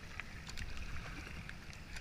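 Kayak paddle strokes in shallow river water, with small splashes and drips, over a steady low rumble of wind on the microphone.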